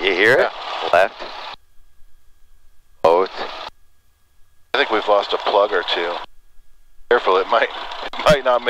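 Voices through an aircraft headset audio feed, in short phrases that cut off abruptly to silence between them.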